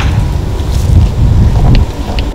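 Wind buffeting the microphone: a loud, uneven low rumble.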